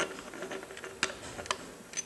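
A few light, sharp metallic clicks spread over two seconds, from metal engine parts being handled against the cast-iron block while an oil pump is lined up on its driveshaft.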